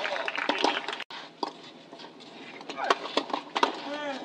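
People's voices and calls at a tennis court, cut off abruptly about a second in. A quieter stretch follows with two sharp knocks of a tennis ball being struck, and voices return near the end.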